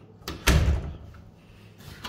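A wooden closet door being pushed shut, landing with a sudden thud about half a second in. Near the end comes a short, fainter rattle of a doorknob being turned.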